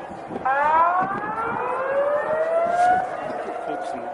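Outdoor warning sirens sounding a tsunami warning. One steady siren tone carries on throughout. About half a second in, another siren winds up in a rising two-tone wail, which cuts off about three seconds in.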